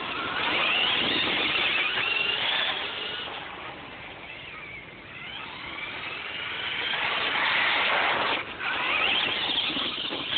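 Traxxas Stampede VXL radio-controlled truck's brushless motor whining, its pitch rising and falling with the throttle. It fades as the truck drives off about halfway through and grows louder again as it comes back near the end.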